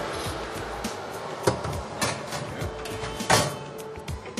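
Background music with a few sharp knocks and clatters as a dish is loaded into a Unox combi oven and its door is shut; the loudest knock comes about three seconds in.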